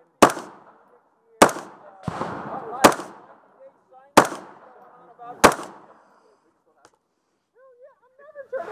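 AR-style rifle fired five times in slow, aimed single shots about a second and a quarter apart, each a sharp crack with a short echo trailing after it.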